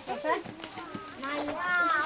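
Children's voices outdoors, with one longer high-pitched call in the second half.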